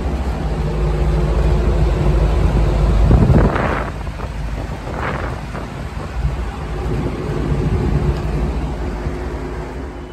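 Vintage box window fan with a thermostat control running: a steady motor hum under a low rush of moving air. Two brief louder rushes of air come about three and a half and five seconds in.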